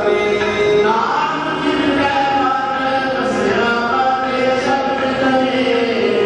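Sikh kirtan: several voices singing a devotional hymn together over long held accompanying notes, at a steady level.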